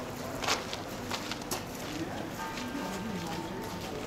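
Outdoor ambience of people in a garden: a few footsteps on a path and distant voices. About two and a half seconds in, a brief steady tone is held for under a second.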